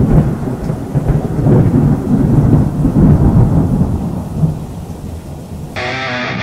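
Thunder rumbling with rain, loud at first and dying away over about five seconds. Near the end, guitar music cuts in.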